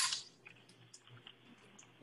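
Quiet kitchen handling: a brief hiss at the very start, then a few faint light clicks and taps as measuring spoons and a pepper container are put down on a plastic cutting board.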